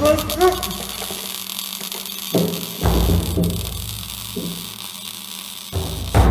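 A man's strained, choking groans in the first half-second, over a dark horror film score: a steady hiss with deep booming hits, one about two and a half seconds in and another near the end.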